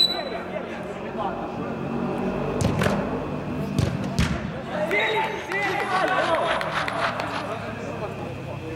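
A football being struck a few times, with sharp thuds clustered about two and a half to three seconds in and two more around four seconds, echoing in a large hall. Players' voices and shouts run throughout.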